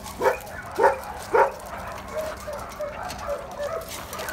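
A dog barking three times in quick succession, about half a second apart, then making quieter short whines.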